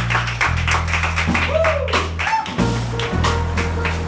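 Instrumental rap backing track between verses: a deep bass line that shifts notes every second or so under a steady drum beat, with a couple of rising-and-falling pitch sweeps in the middle.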